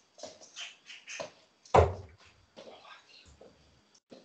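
A steel-tip dart hitting a bristle dartboard with a sharp thud about two seconds in, among lighter knocks and clicks, heard through a video-call connection.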